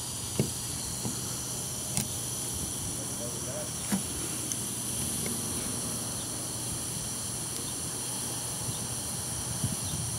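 A steady high-pitched hiss throughout, with a few faint, sparse ticks as a soldering iron and solder wire work a joint on a relay circuit board. The joint is being reflowed to repair cracked solder joints on the PGM-FI main relay.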